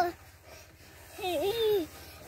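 A young child's short wordless vocal sound, one call that rises and falls in pitch, lasting about half a second and starting a little past the middle.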